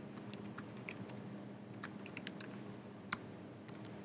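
Soft typing on a computer keyboard: quick, irregular key clicks as a line of text is typed into a terminal, then Enter pressed. One keystroke about three seconds in is sharper than the rest.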